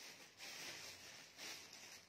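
Soft rustling of clear plastic garment bags being handled, swelling twice as a bagged clothing set is pulled out.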